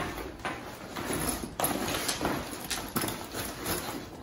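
Hardcover books being packed into a nylon backpack: a series of irregular knocks and scuffs as the books are pushed in and the bag is handled.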